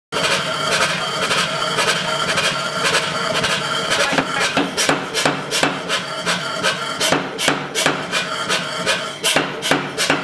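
Background music throughout, joined from about four seconds in by the sharp, repeated strikes of a pneumatic power hammer on a red-hot steel billet, roughly two or three blows a second.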